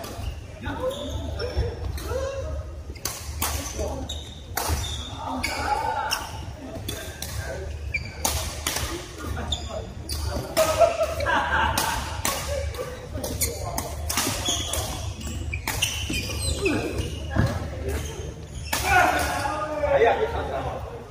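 Badminton play in a large echoing indoor hall: repeated sharp racket strikes on the shuttlecock, a second or so apart, over a steady low hum of fans.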